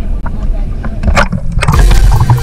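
Water sloshing and splashing against an action camera's waterproof housing held at the sea surface, with a low rumble, a couple of sharp splashes about a second in, and a louder churning noise near the end as the camera dips underwater.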